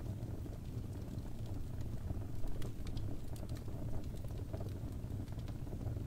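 Wood fire crackling in a fireplace: irregular sharp snaps and pops, several a second, over a steady low rumble of the burning fire.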